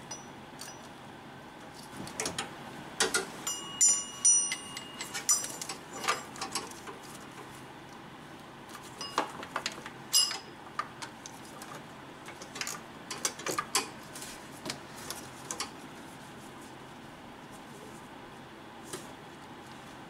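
Ratchet wrench clicking in short runs as the power steering pump mounting bolts are snugged up, mixed with small metallic clinks of the socket and extension against the engine parts. One clink, about four seconds in, rings briefly.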